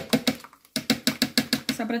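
Small metal mesh strainer full of blended pomegranate pulp being shaken over a bowl, rattling in a fast, even rhythm of about eight knocks a second, with a short pause about half a second in, to drain the juice from the seeds.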